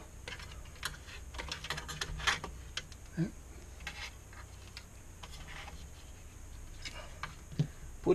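Irregular light clicks and taps of a wire and tweezers being handled against a metal LCD monitor chassis, bunched in the first three seconds, with a few more near the end.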